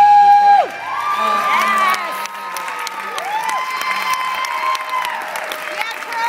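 Audience applauding and cheering, with long high whoops and screams that rise and fall over the clapping. The last note of the music dies away in the first second.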